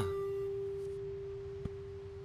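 A single steady pure tone, a held note of the film's background score, slowly fading, with a faint tick a little after halfway.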